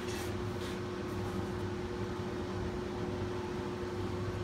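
Steady electric motor hum with a constant mid-pitched tone, from a running 1953 BCA jig borer. A few faint clicks come near the start as the rotary table's handle is worked.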